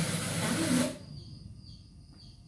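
FM radio static hiss from a Sony LBT-A490K hi-fi's tuner, cutting off abruptly about a second in as the tuner leaves the frequency and mutes while auto-seeking to the next station.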